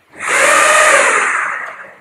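The electric linear actuators of a six-legged Stewart platform whining together as they drive the top plate along its Z axis. The pitch rises and then falls, and the sound fades out near the end.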